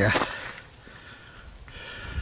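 A man's voice finishing a phrase, then quiet open-air background, with a faint thin tone-like sound near the end.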